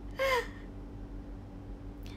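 A woman's short, breathy vocal sound, falling in pitch, about a quarter second in, like a gasp or quick exclamation; then only a steady low hum.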